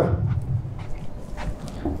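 A man's low, drawn-out hesitation hum on one steady pitch, heard through a handheld microphone.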